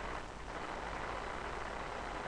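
A pause in the talking: only a steady, even background hiss with a faint low hum, the noise floor of a webcam recording.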